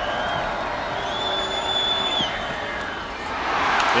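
Stadium crowd noise during a football play, a steady roar that swells near the end. A single high whistle-like tone is held for about a second in the middle.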